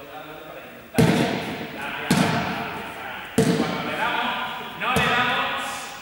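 A large ball struck four times, about a second or so apart starting about a second in, each impact echoing through the sports hall.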